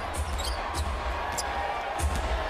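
Basketball dribbled on a hardwood court, a few sharp bounces over the steady murmur of an arena crowd.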